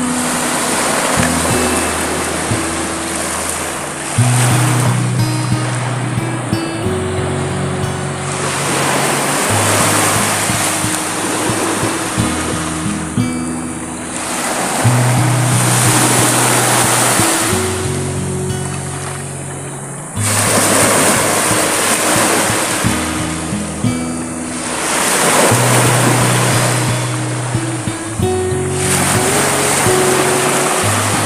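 Small waves washing up on a sand-and-pebble shore, the surf swelling and fading every four or five seconds. Background music with a slow, steady bass line plays throughout.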